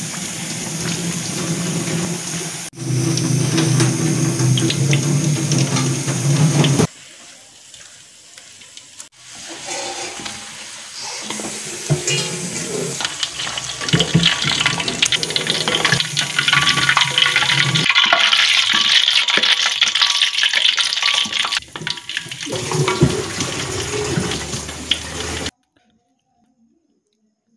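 Potato balls deep-frying in a wok full of hot oil, the oil sizzling, with many small pops in the middle takes. The sound comes in several short takes that cut off abruptly, and it stops near the end.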